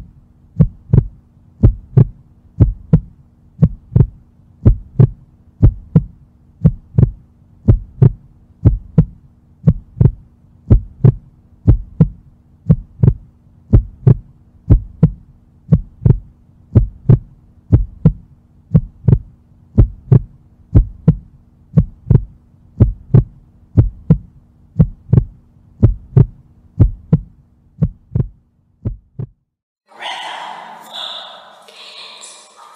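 A steady beat of deep thumps in pairs, about one pair a second like a heartbeat, over a faint steady hum: the beat accompanying the dancers. It stops about a second before the end.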